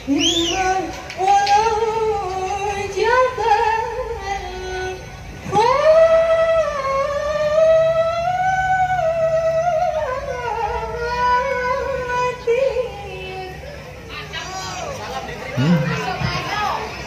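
A woman singing the unaccompanied vocal opening of a qasidah rebana song, one melodic line of long held, ornamented notes with no drums under it yet.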